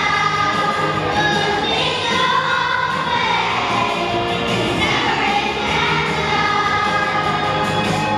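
A children's choir singing together, many young voices on a sustained melody over a steady, lower accompaniment.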